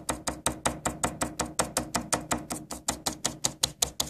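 Rapid, even tapping on a thin plastic cutting board sprinkled with magnetite sand, about six to seven taps a second. The tapping jostles the grains so they settle along the magnetic field lines between the magnets.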